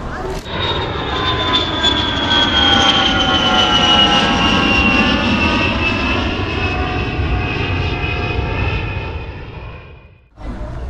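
Jet airliner engines running, a loud rushing noise with several whining tones that slide slowly down in pitch, fading out near the end.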